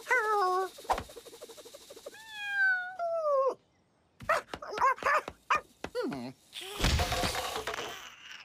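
Dog-like whimpering voiced for a cartoon animal: two falling whines, then a quick run of short yelps. A loud noisy burst follows near the end.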